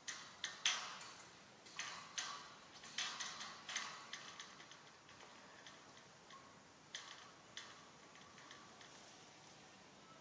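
A series of sharp clicks and cracks, bunched closely in the first four seconds, then a couple of single ones around the seventh second before it goes quiet.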